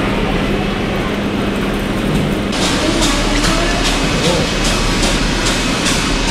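Steady shop-floor din at a live-seafood counter: a constant low hum under a noisy hiss, with faint voices. About two and a half seconds in, the hiss turns brighter and louder, with faint regular ticking, like the bubbling of the aerated seafood tanks.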